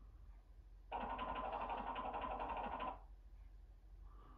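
A DVD menu transition sound effect played through a TV's speakers: a fast, even rattle lasting about two seconds that starts and stops abruptly.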